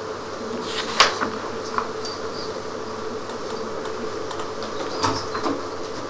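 Quiet classroom room tone: a steady hum, with a few short clicks and knocks, the loudest about a second in and a pair about five seconds in.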